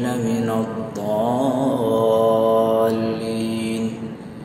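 Male voice reciting the Quran in melodic tajwid style, drawing out the closing words of a verse in long sustained notes with a wavering ornament in the middle. The phrase ends just before the four-second mark.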